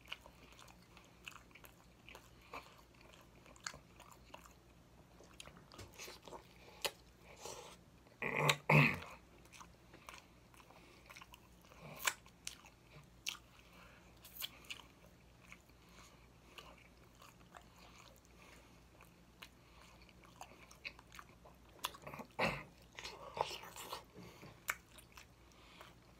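Close-miked eating of baked chicken by hand: wet chewing with frequent sharp lip-smacking and mouth clicks, and finger licking. A short louder voiced sound comes about eight and a half seconds in, and another loud burst of smacking near the end.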